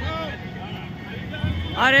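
Men shouting slogans at a flag march: faint shouted calls at first, then a loud, drawn-out shouted slogan begins near the end.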